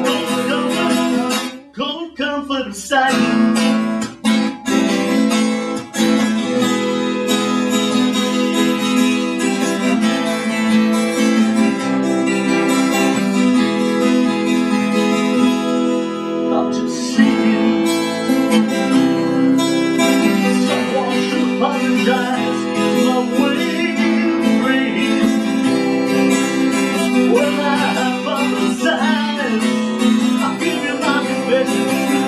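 Several acoustic guitars strummed and picked together in a live song, with short breaks in the playing about two, four and six seconds in.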